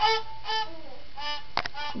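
A toddler bowing a small violin in short repeated strokes, about five notes all on the same pitch in a quick rhythm. A sharp click comes near the end.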